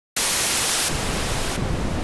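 Static-like hiss from a logo intro's sound design, starting abruptly. Its top end dims twice, about a second in and near the end.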